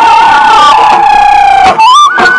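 Bihu folk dance music: one long held high note, sagging slightly in pitch, carries over the accompaniment and breaks off shortly before the end, when a stepping melody line takes over again.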